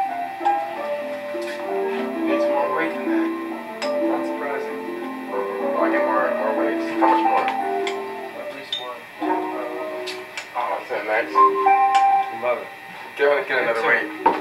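A tune of held notes at changing pitches, a few notes a second with a short break about nine seconds in, over faint ticking, played as the weight-driven homemade clock mechanism runs after its weights are let go.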